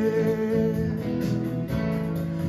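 Song music led by a plucked acoustic guitar, with steady held notes sounding over it and no words sung.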